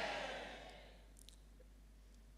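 The amplified voice of a man dies away as an echo in a hall over the first second. Then comes faint room tone with one soft click.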